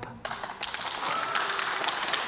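Applause: many people clapping at once in a dense patter that starts just after the speech ends, with a few voices calling out around a second in.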